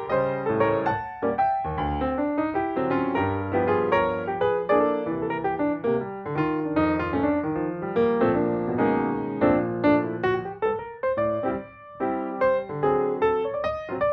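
Piano music, with notes following one another in quick succession.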